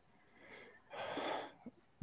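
A person's short, breathy exhale about a second in, lasting about half a second, with a faint tick just after; the rest is near silence.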